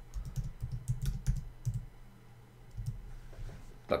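Typing on a computer keyboard: a quick run of key clicks through the first two seconds, then a few scattered keystrokes.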